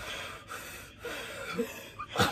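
Deep breaths taken in quick succession, about four in a row, each lasting roughly half a second, as part of a breathing exercise.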